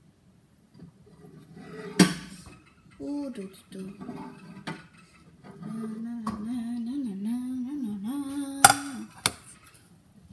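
A girl humming a wavering tune while kitchenware clatters, with a sharp clack about two seconds in and another near the end.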